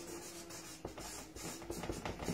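A marker writing on flip-chart paper: faint, short scratching strokes, one after another, as a word is lettered.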